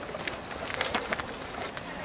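Footsteps of two people walking on a paved path, a series of light steps, with a bird calling in the background.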